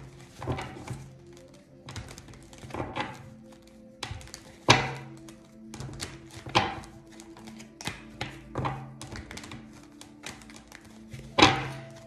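Tarot cards shuffled by hand: quick flicks and clicks of the cards, with a louder knock of the deck about five, six and a half and eleven and a half seconds in. Soft background music with steady held tones runs underneath.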